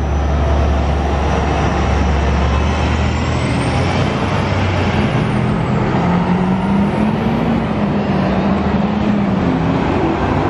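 City transit buses pulling past close by, their engines running with a deep rumble and then climbing and falling in pitch as a bus accelerates away. A faint high whine rises and falls twice over the street traffic.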